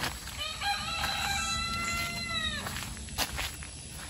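A single long, pitched animal call, starting about half a second in, held for about two seconds and dropping away at the end.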